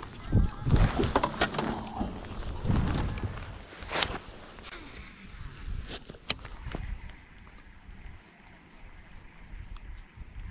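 Handling noises of fish and tackle on a boat deck: scattered knocks and rustles, then two sharp clicks about four and six seconds in, over wind on the microphone; it is quieter over the last few seconds.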